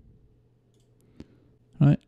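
A single sharp computer mouse click about a second in, over a faint low room hum; the click opens an on-screen editing dialog.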